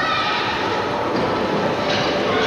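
Steady, even background noise of an indoor ice rink, picked up by a home camcorder's microphone.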